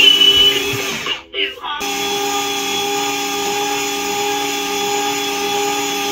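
Battery-powered ride-on toy train's small electric motor whirring steadily, cutting out briefly about a second in and starting again.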